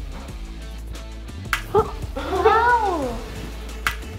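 A long drawn-out cry that rises and then falls in pitch, over background music, with two sharp clicks, one before the cry and one near the end.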